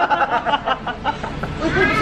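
Several people laughing hard together, in short repeated pulses, with a word or two spoken through it.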